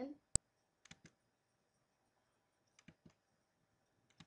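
Computer mouse clicks: one sharp, loud click about a third of a second in, then two quick runs of about three softer clicks around one and three seconds in.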